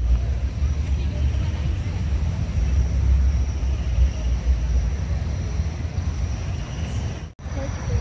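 Open-air crowd ambience: a steady low rumble with faint voices of people around, cutting out for an instant near the end.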